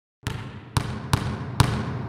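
A basketball being dribbled: four bounces on a hard floor, about half a second apart, each with a short echo.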